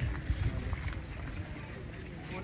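Wind buffeting the phone's microphone in uneven low gusts, over the faint chatter of a large outdoor crowd.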